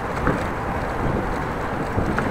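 Steady wind noise buffeting a handlebar-mounted action camera's microphone while riding a bicycle, mixed with the low rumble of the tyres on brick paving.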